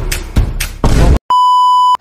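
Electronic music with a heavy regular beat that cuts off a little over a second in, followed by a loud, steady, single-pitched electronic beep lasting most of a second.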